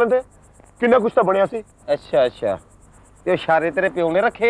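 Crickets chirping in a steady high-pitched pulse, about five chirps a second, under men's conversation in Punjabi.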